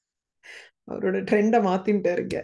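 A woman's voice: a short, quick in-breath about half a second in, then she speaks in a clear, pitched voice for the last second.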